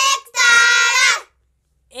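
A child singing a line of a Hindi alphabet rhyme in a high voice: a short syllable, then one long held word lasting about a second.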